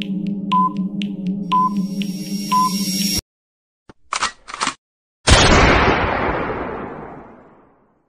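Quiz countdown timer sound effect: a steady electronic drone with a tick and beep once a second, three beeps in all, cutting off suddenly about three seconds in. Two short noisy blips follow, then a loud sudden burst about five seconds in that fades away over two seconds as the answers are revealed.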